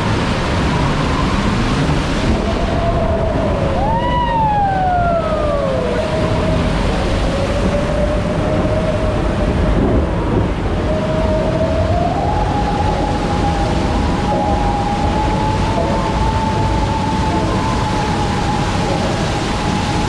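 Steady rushing noise of a log flume ride in its dark interior, with long pitched tones that waver in pitch. One tone slides sharply down about four seconds in, and another steps up and holds from about twelve seconds.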